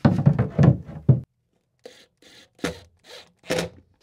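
An access panel being pushed and fitted into its opening in boat cabinetry: a quick run of rubbing and knocks, then, after a short gap, a few separate knocks.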